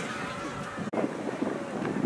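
Wind buffeting the microphone at an outdoor football pitch, with faint distant shouts of players. The sound cuts out for an instant about a second in.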